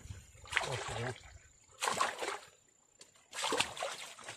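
Water splashing in a woven bamboo basket holding fish and muddy water, in three short bursts about a second and a half apart, as the fish are handled in it.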